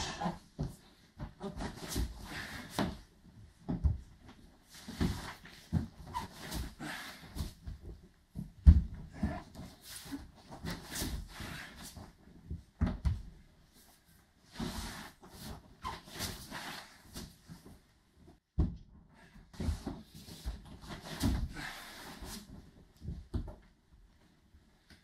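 A person doing repeated backward shoulder rolls on a bare wooden floor: irregular dull thumps as the back and shoulders land, with swishes of a heavy cotton judo uniform.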